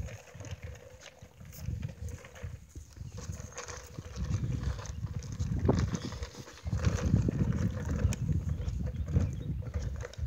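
Footsteps on a paved walking path, with an uneven low rumble on the phone's microphone that swells in the second half.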